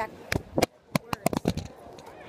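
Smartphone recording while it is fumbled and dropped: a quick string of sharp knocks and handling bumps on the phone over about a second and a half.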